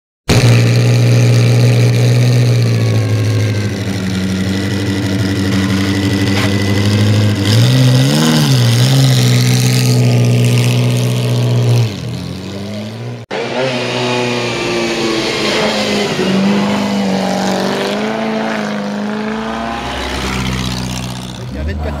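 Vintage racing car engines running. The first holds steady revs with a brief blip about eight seconds in and drops off near twelve seconds. After an abrupt cut, another engine runs with rising and falling revs as a car climbs the hill.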